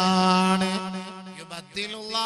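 A man chanting, unaccompanied, in a long held note that fades about one and a half seconds in, with a new note starting just before the end.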